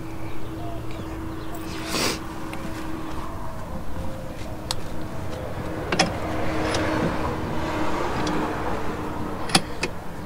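Scattered sharp metal clicks and knocks from handling a drive shaft and tools in a bench vise, two coming close together near the end, over a steady low hum.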